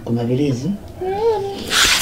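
A low voice for the first half-second, then a short high whining sound that rises and falls, then a brief hiss near the end.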